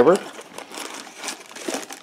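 Quiet crinkling and rustling of paper and plastic packaging as it is handled in a cardboard box.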